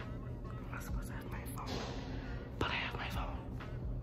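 A young woman whispering close to the phone's microphone, breathy bursts of whispered words twice in the middle, over a steady low hum.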